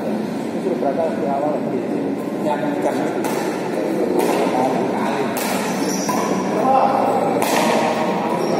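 People talking throughout, with a few sharp racket hits on a shuttlecock during a doubles badminton rally.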